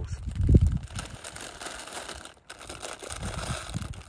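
A can of energy drink being opened and drunk from: a sharp knock about half a second in, then a hissing, rustling stretch that breaks off briefly and resumes.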